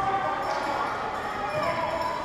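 Hockey arena ambience: distant shouts and calls from players and spectators echo in the rink, with occasional knocks from the play.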